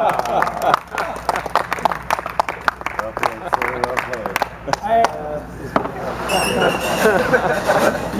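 Voices talking in the background, with many irregular clicks and knocks during the first four seconds or so.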